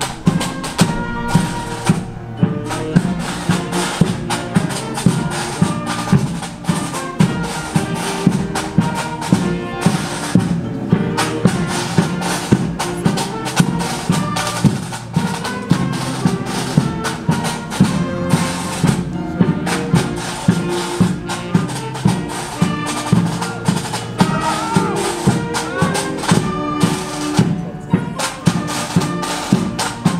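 Pipe band playing a march: bagpipes over snare and bass drums, with a steady beat of about two strokes a second.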